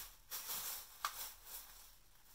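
A paper instruction sheet rustling as it is handled, in a few short soft crinkles with a sharper click about a second in.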